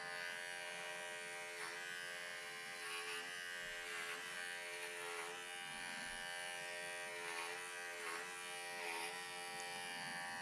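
Cordless animal clippers running steadily with a buzzing hum as they shear an angora rabbit's wool. The pitch sags briefly several times as the blades bite into thick wool.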